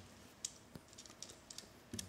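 Faint, scattered small clicks from handling a Crimson Trace MVF-515 vertical foregrip as it is seated on an AR-15's Picatinny rail, with fingers working at its rail clamp.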